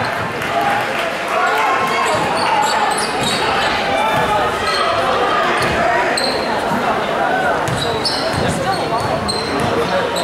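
Basketball being dribbled on a hardwood gym floor amid echoing crowd voices, with sneakers squeaking briefly and often on the court.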